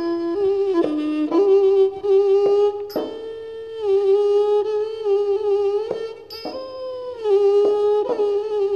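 So u, the Thai two-string bowed fiddle with a coconut-shell body, playing a slow solo melody. Long held notes are joined by small slides in pitch, with a new note every second or so and a longer held note through the middle.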